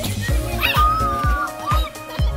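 Background music with a steady drum beat. Over it, a Rottweiler puppy gives one high, drawn-out whine about halfway through.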